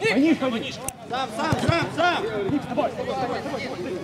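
Men's voices talking and calling over one another: speech only.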